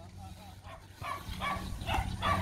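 Faint, short voice-like calls from about half a second in, growing a little louder toward the end, over a steady low hum.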